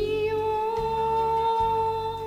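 A female singer holds one long, steady note over a backing track with a pulsing bass line.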